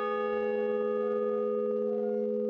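A large hanging bell ringing on after a single strike: a steady hum of several tones together that fades only slightly.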